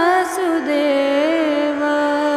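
A woman singing a drawn-out, ornamented phrase of a Hindu devotional mantra chant, accompanied by a harmonium. Her voice wavers and slides down about half a second in, then settles into a long held note over steady drone notes.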